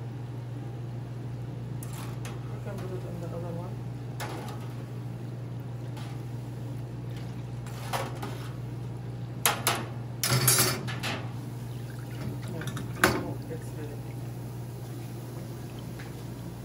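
Falafel frying in the oil of a commercial deep fryer over a steady low hum, with metal clanks and rattles of tongs and a wire fry basket against the fryer between about eight and thirteen seconds in, loudest around ten seconds.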